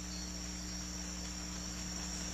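Steady background chirring of insects such as crickets, a jungle ambience effect in an animated soundtrack.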